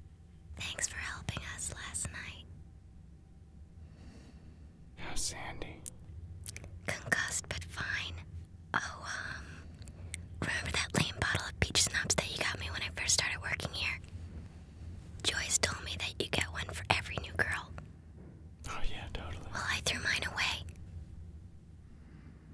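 Hushed whispering in about six bursts with short pauses between them, inside a small foam-lined sound booth.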